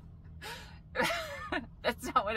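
A woman gasping: a quick noisy intake of breath, then a short voiced exclamation that falls in pitch about halfway through, with a couple of brief vocal sounds after it.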